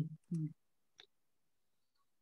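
A single computer mouse click about a second in, just after a brief spoken syllable.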